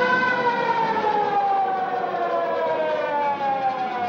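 Mechanical police-car siren winding down, one long wail whose pitch falls slowly and steadily.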